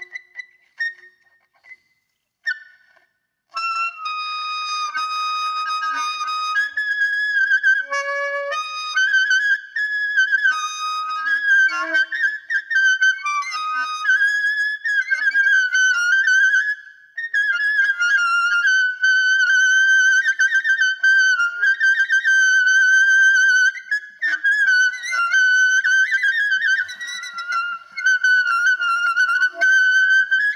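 Solo alto saxophone free improvisation. After a near-silent pause with a few brief notes, continuous playing starts about three and a half seconds in: mostly long, high, wavering notes broken by short lower phrases.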